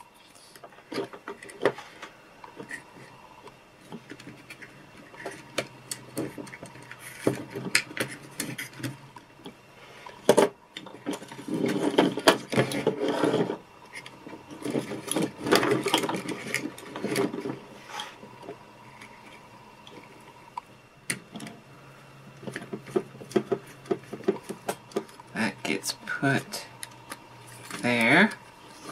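Small plastic toy-robot parts and wires being handled on a workbench: scattered clicks and light knocks, with denser clatter about twelve and sixteen seconds in, over a faint steady hum.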